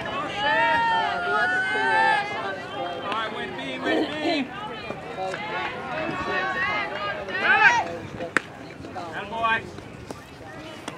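Spectators and players calling out across a baseball field, several voices overlapping, some high-pitched and drawn out. There is one sharp crack about eight seconds in.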